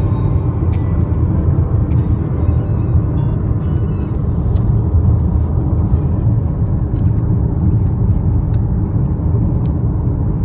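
Road noise inside a moving car's cabin: a steady low rumble of tyres and engine at highway speed, with faint music underneath.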